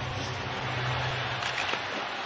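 Steady arena crowd noise, an even murmur with a low hum underneath that fades out near the end.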